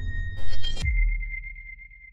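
Electronic logo-sting sound effect: a low bass drone with a short, loud noisy burst about half a second in, then a single high ringing tone that fades away.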